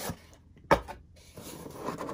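Cardboard sleeve sliding off a watch box, with one sharp tap about two-thirds of a second in and a soft scraping rustle building near the end.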